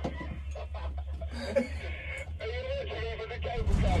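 A man laughing over a steady low hum, with music in the background.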